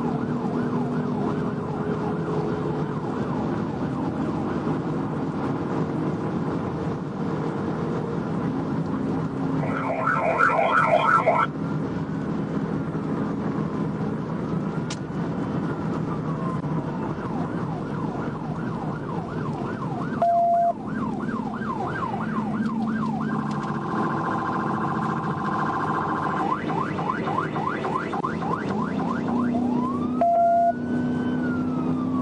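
A police cruiser's electronic siren heard from inside the car. It mostly runs in a fast yelp, with a few slower wail sweeps, over engine and road noise at high speed. A louder, harsher horn-like blast comes about ten seconds in, and a short beep about twenty seconds in.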